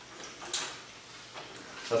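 Cast iron casters of a motorcycle jack rolling on a concrete floor as the jack, loaded with a motorcycle, is pushed about, with one sharp knock about half a second in.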